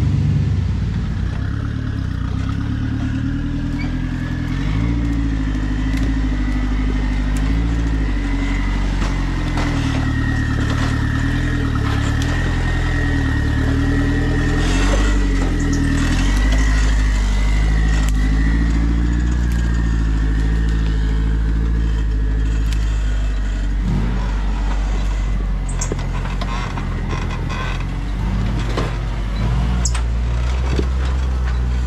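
Rock-crawling buggy engines working under load, revving up and falling back again and again as the rigs climb a rock ledge. A steady high whine sits over the engine for much of the time, with scattered knocks.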